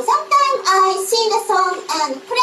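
A woman's high-pitched, childlike voice speaking a sing-song self-introduction in English that is hard to make out, with a steady hum underneath.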